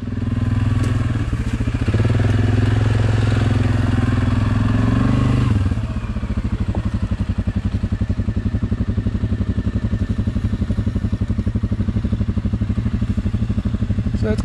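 ATV engine running steadily under throttle, then easing off about five and a half seconds in to a lower, evenly pulsing note.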